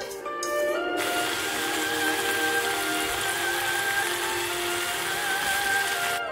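Soft background music with a gliding, guitar-like melody; about a second in, a loud steady hiss of frying starts abruptly underneath it: leaf-wrapped meat rolls sizzling in oil in a frying pan.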